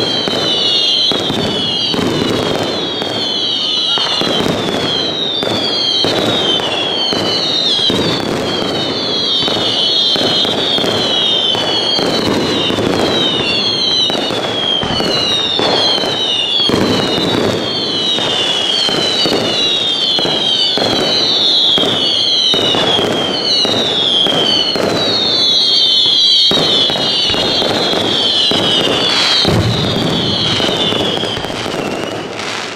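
Fireworks display: a continuous barrage of whistling shells, each whistle short and falling in pitch, about two a second, over a dense crackle and popping of bursts.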